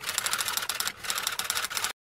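Typing sound effect: rapid, evenly spaced keystroke clicks, about ten a second, with a brief pause about a second in, cutting off abruptly near the end.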